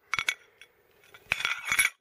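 Ceramic floor tiles clinking against each other as they are handled and set down: a few sharp clinks just after the start, then a longer run of clinks in the second half.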